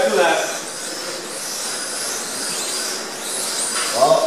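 Small electric motors of Mini-Z radio-controlled cars whining as they run around an indoor track, the pitch rising and falling as they speed up and slow for the corners.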